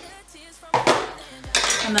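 A single sharp clink about a second in, as of a hard object knocked against or set down on a hard surface.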